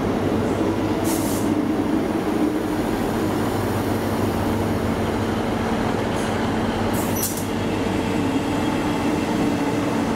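ScotRail Class 158 diesel multiple unit running along the platform: a steady diesel drone with wheel and rail noise. Brief high squeals come about a second in and again around six to seven seconds in.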